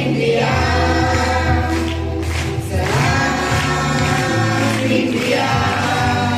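A group of boys and girls singing a Telugu song together into microphones, amplified, with a bass line running underneath.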